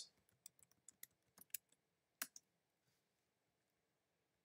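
Faint computer keyboard keystrokes: about eight separate clicks over the first two and a half seconds, the loudest a little over two seconds in.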